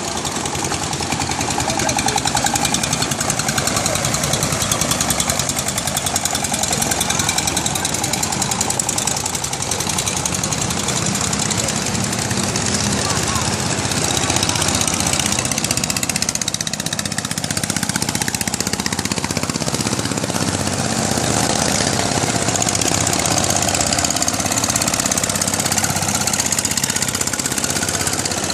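Long-tail boat engine running steadily with a fast, even knock.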